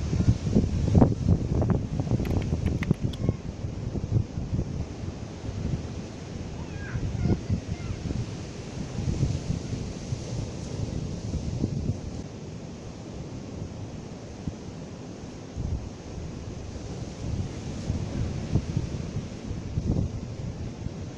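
Wind buffeting the microphone in gusts, a low rumbling noise that rises and falls, with a few sharp clicks of footsteps on rock in the first few seconds.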